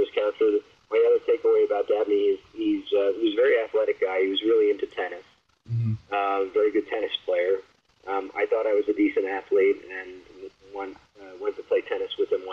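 Speech only: a man talking in conversation, with a brief low bump a little before halfway.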